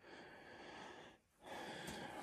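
Faint breathing: two soft breaths with a short break between them a little over a second in.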